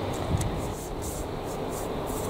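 Steady outdoor background noise with a low, unsteady rumble, and a soft knock about a third of a second in.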